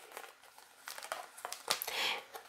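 A deck of tarot cards handled and shuffled in the hands: faint papery rustling and a few soft card flicks starting about a second in, the sharpest just before the end.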